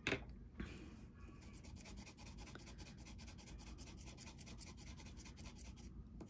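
Faint scratchy rubbing of a Caran d'Ache pastel pencil scribbling a swatch onto grey pastel paper, going on steadily after a short click right at the start.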